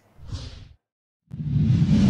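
Two whoosh sound effects for a logo transition: a short, light one right at the start, then, after a brief silence, a longer and louder whoosh with a deep rumble that swells near the end.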